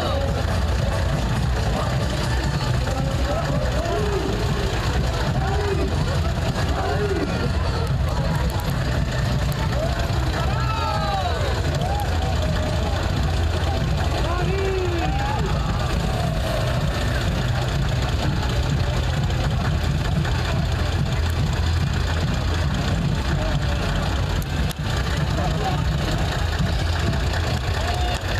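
Old bonneted truck's engine idling steadily, a constant low rumble, with voices and calls from the crowd over it.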